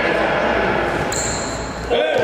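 A basketball bouncing on a hardwood gym floor, with voices echoing in the large hall.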